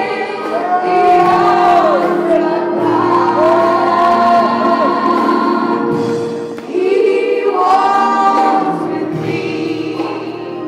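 Gospel choir singing, the voices holding long notes together.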